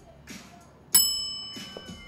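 A bell struck once about a second in, its bright ringing tones fading slowly.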